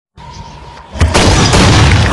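Intro sound effect: a faint hiss with a thin steady tone, then about a second in a sudden loud boom that carries on as a heavy, dense rumble.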